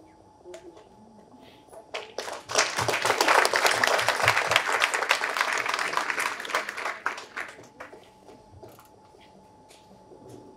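A small group applauding, starting about two seconds in, running for about five seconds and tapering off.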